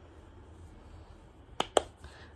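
Two quick sharp clicks about a fifth of a second apart, from a skincare product bottle being handled, over faint room tone.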